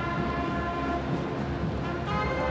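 A large massed brass marching band playing the entrance march, holding sustained brass chords.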